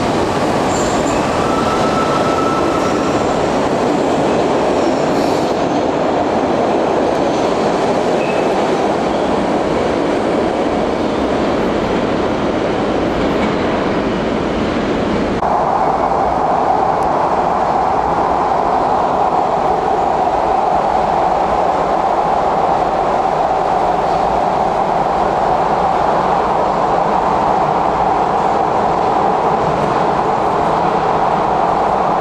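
SEPTA Market–Frankford Line subway train running past an underground platform: the rumble of wheels and cars, with a brief high squeal about two seconds in. About halfway, it changes abruptly to the steady running noise heard inside a moving car, a drone with a strong mid-pitched hum.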